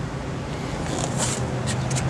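The 440 cubic-inch V8 of a 1970 Dodge Charger R/T idling steadily through its Flowmaster dual exhaust, a healthy-sounding motor. A few short hissy rustles come about a second in.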